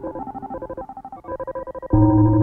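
Glitchy live electronic music: synthesizer tones chopped into a fast, ringtone-like stutter that thins out around the middle. Just before the end the full mix comes back in with a heavy bass.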